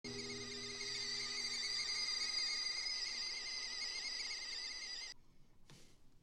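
Stovetop whistling kettle whistling at the boil: a loud, high, slightly wavering whistle that cuts off suddenly about five seconds in.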